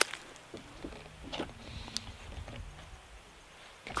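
A few faint crinkles of a Honey Stinger waffle's foil-plastic wrapper as it is handled while the waffle is eaten, over a quiet background.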